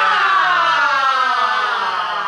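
Shouting voices holding one long cry that falls steadily in pitch, a war-cry in a mock haka chant.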